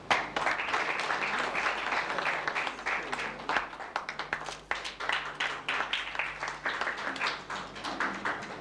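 Audience applause: many hands clapping in a dense patter that starts suddenly and carries on steadily.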